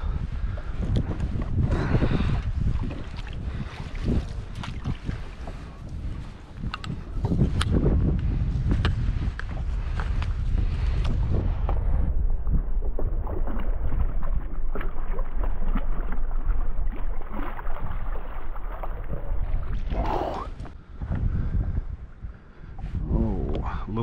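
Wind noise on the microphone over moving water, with scattered short knocks and clicks from handling rod and gear on a kayak while a hooked fish is being played.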